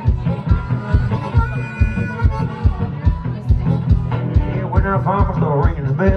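Live blues instrumental break: acoustic guitar played over a steady thumping beat of about two and a half beats a second, with a harmonica playing long held notes and, near the end, bending ones.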